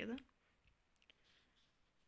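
Near silence in a small room, broken by a few faint, sharp clicks.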